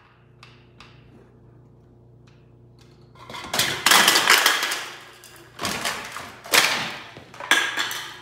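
Winnebago motorhome entry door opened, with a rattly noise lasting over a second about three and a half seconds in, then three footfalls about a second apart as a man steps down out of the doorway. A faint low hum sits underneath.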